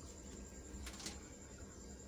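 Quiet kitchen room tone: a low steady hum and a thin steady high-pitched whine, with one soft brief rustle about a second in.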